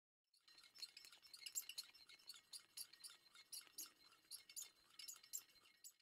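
Faint, irregular high-pitched clinking and tinkling, several light clicks a second, like small chimes or glass.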